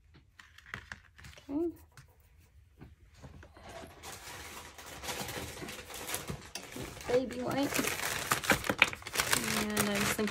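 Soft plastic packet of wet wipes crinkling and crackling as it is handled and a wipe is pulled out. The sound starts about three and a half seconds in and grows louder toward the end.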